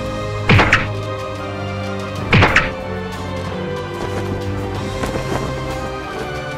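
Dramatic background music, cut by two heavy impact sound effects about two seconds apart, each a sudden hit that sweeps down in pitch.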